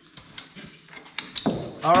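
Metal ratchet buckle of an orange ratchet tie-down strap being worked open to release the strap: a string of irregular sharp metallic clicks and clinks.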